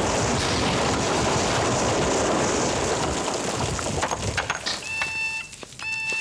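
Sustained rushing rumble of dust and debris in an underground car park in the aftermath of an explosion, dying away about four seconds in. Near the end a steady high electronic beep tone starts.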